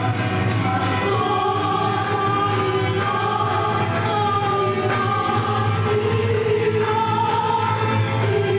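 Live small ensemble performing: a woman singing into a microphone with flute and guitars, in long held notes over a steady low drone.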